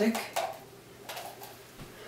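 Light handling noise from a homemade ABS plastic-pipe trombone with a funnel bell: a few soft clicks and rustles as the plastic parts are pressed together and moved, then a low thump near the end.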